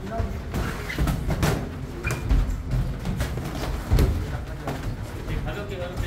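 Boxing gloves thudding in irregular short hits as punches land on and are blocked by the opponent's gloves and headgear, the loudest hit about four seconds in, with footwork on the ring mat.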